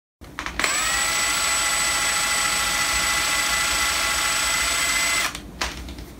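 Cordless drill with a hook in its chuck, pulling on a wire strand clamped in a bench vise: the motor comes up to speed in a moment, runs at a steady whine for about four and a half seconds, then stops abruptly. A few faint clicks follow near the end.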